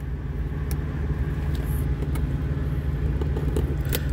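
A steady low mechanical hum, with a few faint light clicks as a plastic fork picks and tears at plastic wrapping.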